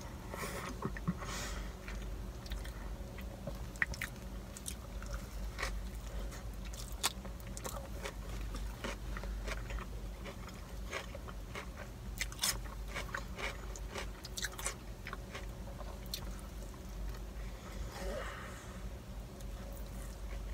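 A person chewing a burger close to the microphone, with scattered wet mouth clicks and smacks, over a steady low hum.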